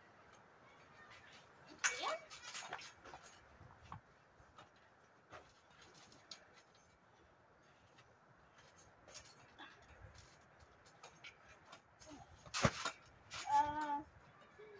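Quiet background broken by scattered faint knocks and clicks, with one sharper, louder knock near the end, followed by a child's voice briefly.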